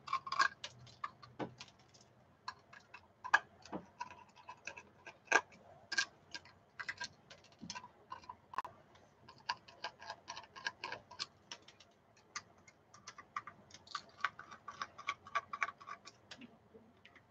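Screwdriver working the small screws of a hard drive while the drive and its circuit board are handled: a run of irregular light clicks and ticks.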